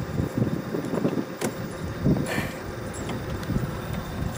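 Golf cart being driven, its body rumbling and rattling over the ground, with a sharp click about a second and a half in.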